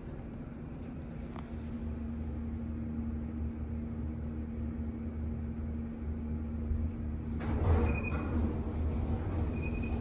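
Schindler hydraulic elevator's pump motor running with a steady hum as the car travels up. About three-quarters of the way through, the car doors start sliding open with a rushing noise, and two short high tones sound.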